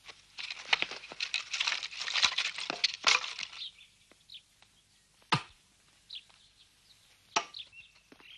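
Axe chopping wood on a log. A dense run of cracking and clattering fills the first three seconds or so, then two single sharp axe strikes land about two seconds apart.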